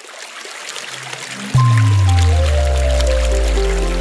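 Commercial soundtrack: a rushing, water-like sound effect swells louder for about a second and a half. Then a deep, sustained music chord comes in suddenly and holds.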